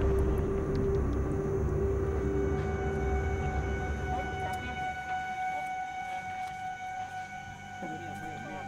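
Background music of sustained drone tones: one low held note, joined about three seconds in by a higher held note that carries on after the low one stops, over a deep rumble that fades out about halfway.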